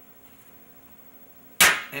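A single sharp click of a wooden xiangqi piece knocking against the board and other pieces as it is picked up to be moved, near the end, after near silence.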